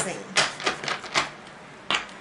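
A deck of tarot cards being shuffled and squared up in the hands: a quick run of sharp card snaps and taps, then a pause and one more tap near the end.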